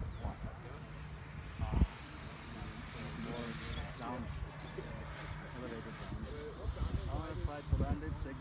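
High, thin, steady whine of a 12-blade electric ducted fan on an RC jet flying far overhead, dropping to a lower pitch about six seconds in as the throttle comes back. Low wind rumble on the microphone and a single thump near two seconds.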